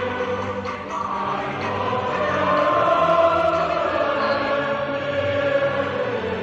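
Background choral music: a choir holding long sustained chords, growing a little louder in the middle.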